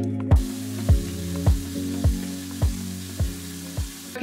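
Background music with a steady beat, joined shortly after the start by the even hiss of a shower head spraying water.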